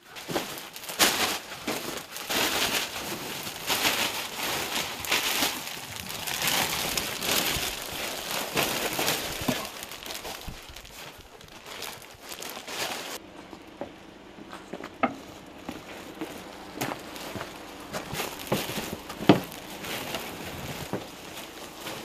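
Thin clear plastic bags rustling and crinkling as they are handled and stuffed, with many small crackles. About halfway through the sound suddenly thins to scattered crinkles and knocks, the loudest a sharp knock near the end.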